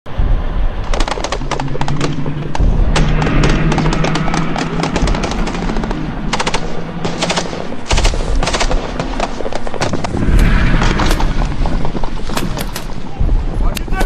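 Rifle and machine-gun fire: dense overlapping bursts of shots, thinning to scattered shots and short bursts in the second half.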